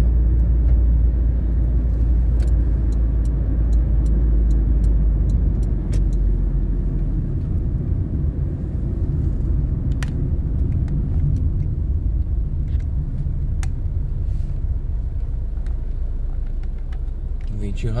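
Road noise heard from inside a moving car: a steady low rumble of engine and tyres, heavier for the first seven seconds or so and lighter after that, with a few faint clicks.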